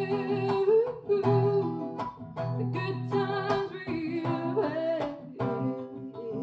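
A woman singing long, wavering held notes over a strummed acoustic guitar, the strums falling in a steady rhythm.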